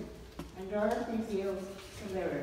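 Women's voices talking quietly, with one light click about half a second in.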